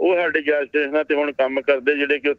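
Speech only: a man talking steadily in Punjabi, with the slightly narrow sound of a remote or broadcast link.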